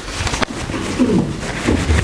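A clip-on lapel microphone being handled: a sharp click about half a second in and some rubbing, with low falling tones about a second in and again near the end.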